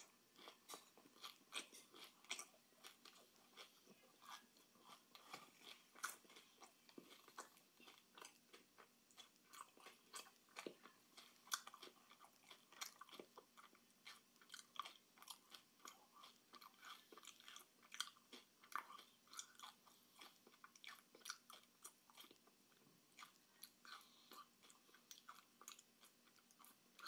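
A person chewing candy close to the microphone: a quiet, irregular run of small crunches and mouth clicks, several a second.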